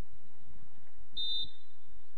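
A referee's whistle blown once in a short, steady, high blast just over a second in, over a low rumbling background.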